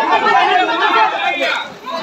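Several men talking and calling over one another, with a brief lull near the end.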